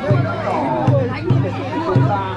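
A large festival drum beaten in repeated, slightly uneven strokes, a little under half a second apart, over the chatter of a large crowd.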